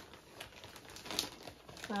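Clear plastic bag crinkling as it is handled, a run of small irregular crackles with a few sharper ones.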